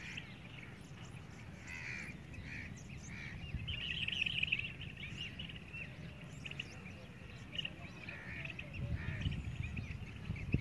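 Small birds chirping, a busy run of short calls that is densest about four seconds in, over a steady low rumble.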